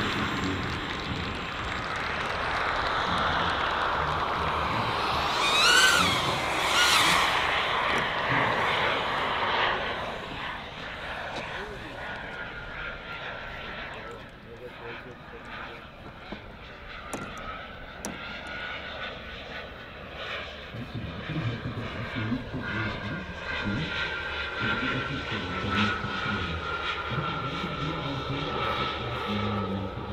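Four JetsMunt 166 model jet turbines of a large RC Airbus A380 running in flight: a loud rushing noise as the model passes low for the first ten seconds, then a fainter steady high whine as it climbs away. Two short rising chirps sound about six seconds in.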